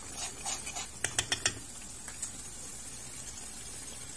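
Wooden spatula stirring thick curry masala in a metal kadai: a few soft scraping strokes, then a quick run of four sharp clicks about a second in, over a faint steady hiss.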